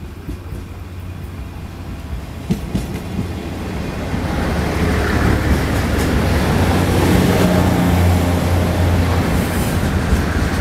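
Taiwan Railways DR3000 diesel multiple unit pulling into a station, its diesel engines droning and its wheels running on the rails. It grows louder over the first half as the cars come alongside and then holds steady, with a couple of sharp clicks about two and a half seconds in.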